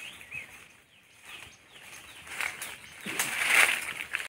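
Leaves and branches of a mango tree rustling as a climber moves down through it, building up and loudest near the end, with a few faint bird chirps at the start.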